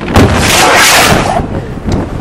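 Aerial fireworks shells going off close overhead. A loud bang just after the start runs into a long noisy rush lasting about a second, and a second sharp bang comes near the end.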